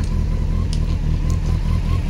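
A vehicle engine idling steadily, a low even rumble.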